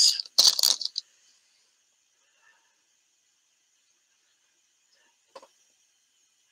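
Brief crackly rattle of a plastic needle package being handled and set aside, then near silence with a faint steady hiss and one small click about five seconds in.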